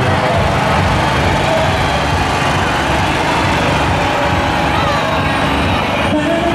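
Small car engines running as a line of classic SEAT 600 cars rolls slowly past, under a crowd's talk.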